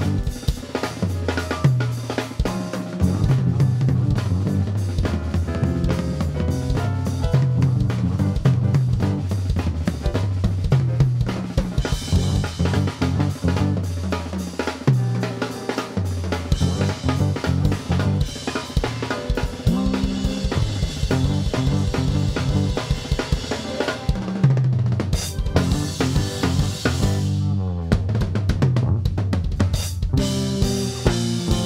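A live funk trio playing, with the drum kit to the fore: snare and kick drum with rolls, over an electric bass line. Near the end a falling sweep runs through the music.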